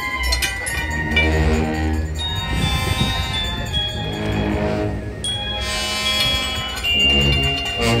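Procession band music: a slow march with long held notes over a deep bass line.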